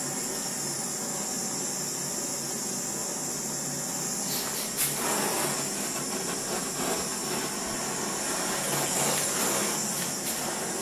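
Handheld gas blowtorch flame hissing steadily as it heats a copper pipe joint so the solder flows in. About four seconds in the hiss becomes fuller and slightly louder, with a light knock shortly after.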